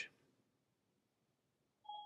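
Near silence, then near the end a single short electronic chime from the iPad: the Hey Siri setup tone, marking that the spoken phrase has been taken.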